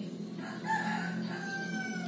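A rooster crowing: one drawn-out crow that begins about half a second in and runs to near the end, over a steady low hum.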